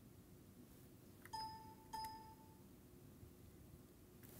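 Two identical short electronic ding tones about half a second apart, a little over a second in, over faint room hiss.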